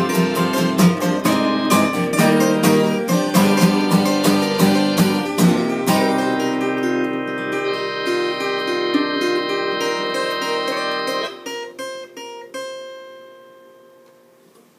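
Acoustic guitar strumming a steady rhythm, then holding a ringing chord about six seconds in. Near the end come a few short chords, and a final chord fades away, closing the song.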